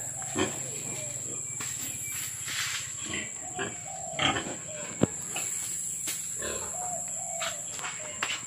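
Domestic pigs grunting in a pen: a series of short, irregular grunts. There is one sharp knock about five seconds in.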